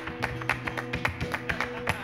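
Flamenco guitar playing a granaína, with sustained notes under quick, uneven sharp taps from the dancer's footwork on the stage floor.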